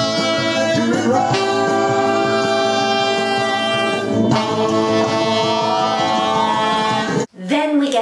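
Alto saxophone holding long notes over a soul backing track with a male singer, moving to a new note about a second in and again about four seconds in. The music cuts off suddenly about seven seconds in.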